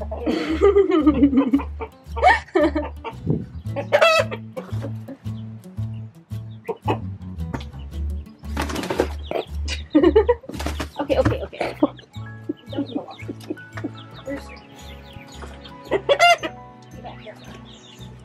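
Chickens clucking and squawking in short calls, with wings flapping, over background music with a steady bass beat; a woman laughs about four seconds in.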